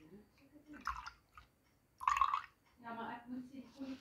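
Liquid poured from a plastic jug into a plastic cup, the stream splashing in short, uneven spurts, loudest about two seconds in.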